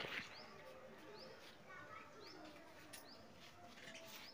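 Faint birdsong: short, high, rising chirps every second or so.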